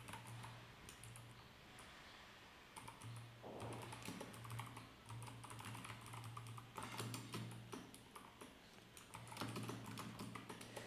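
Faint computer keyboard typing: irregular keystrokes clicking through, over a low steady hum.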